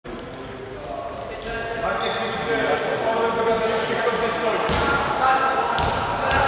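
Basketball bouncing on a sports-hall floor, a few sharp bounces with the last two about a second apart near the end, echoing in a large gym over players' and spectators' voices.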